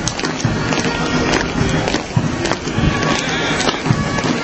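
Footsteps of a column of firefighters marching on asphalt, with frequent short clicks and knocks over the noise of the street, and music playing.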